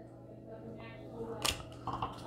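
Faint steady room hum, broken by a single sharp click about one and a half seconds in and a softer one near the end: trading cards handled and set down.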